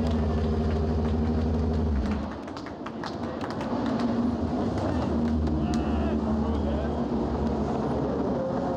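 Moto2 race bike's Triumph three-cylinder engine idling steadily, with a brief dip about two seconds in. Voices are heard over it.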